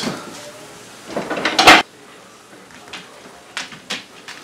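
Kitchen cabinet and dishes being handled. There is a clatter about a second in that ends in a sharp knock, then a few light clicks near the end.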